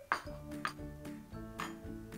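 Background music with soft held mallet-like notes, over which a metal spoon clinks against ceramic serving bowls three times. The first clink, right at the start, is the loudest.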